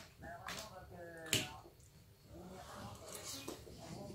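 Quiet eating sounds: a metal fork and knife working in a plate of salad, with one sharp click about a second and a half in.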